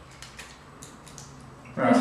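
Faint crinkling and crackling of a waxed-paper candy wrapper being peeled off a chewy fruit sweet: a few light crackles in the first second, with a man's voice starting near the end.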